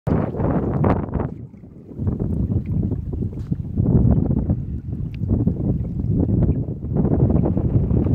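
Wind buffeting a phone's microphone over open water: a heavy, gusting low rumble that dips briefly about a second and a half in.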